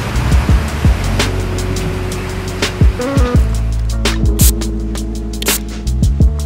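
Electronic outro music: a rushing swell at first, then deep bass notes that slide downward in pitch, punctuated by sharp percussive hits.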